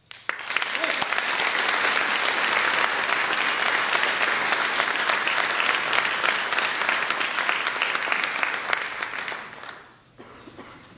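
Audience applauding a choir: dense clapping that starts suddenly just after the singing ends, holds steady, and dies away near the end.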